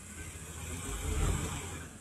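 Pickup truck engine running under load while towing on a strap, a low rumble that swells a little after a second in and then eases off.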